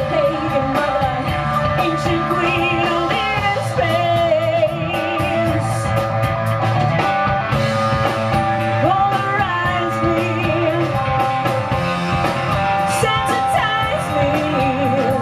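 A rock band playing live: a woman sings lead over a full band with drum kit and cymbals.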